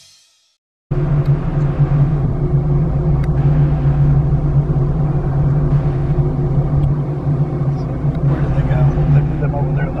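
Steady low engine drone heard from inside a car's cabin, cutting in suddenly about a second in after a moment of silence.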